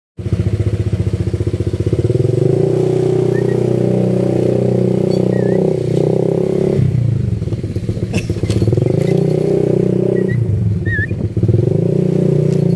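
Motor scooter engine running, its pitch dropping and climbing again a few times as the throttle changes. A few short, high bird chirps sound over it.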